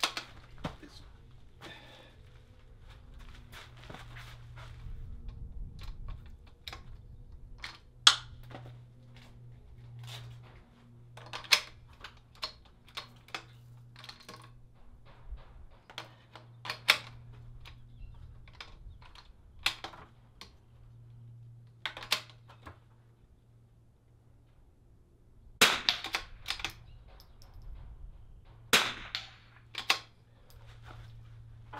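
.22LR rifle firing single shots, about eight in all, a few seconds apart. Between shots come smaller clicks and clacks of the bolt being worked and the rifle being moved from rung to rung on a stepladder.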